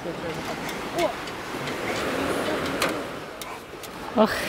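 A few sharp clicks and light knocks from a child climbing a metal swing frame, over a steady outdoor background hiss, with a brief voice sound about a second in.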